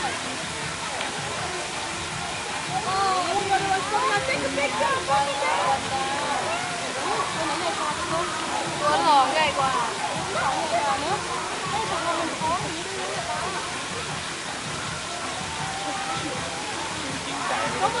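Indistinct chatter of several people's voices, none of it clear enough to make out, over a steady rushing background noise.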